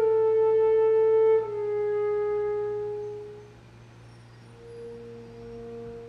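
Solo alto saxophone holding a long note that steps slightly lower about a second and a half in, then fades away. After a brief hush, a soft new note enters near the end.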